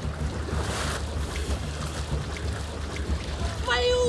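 Thick muddy water splashing and sloshing in a small pool as a swimmer dives and surfaces, strongest about a second in. A woman's voice calls out near the end.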